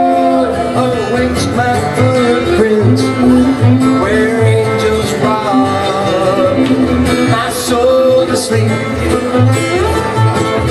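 Live bluegrass band playing at a steady pulse, with acoustic guitar, mandolin, banjo and upright bass, and two male voices singing in close harmony.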